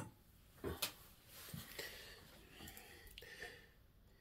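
Quiet workshop room with a few faint clicks and knocks of hand tools being handled at the workbench, the loudest a little under a second in.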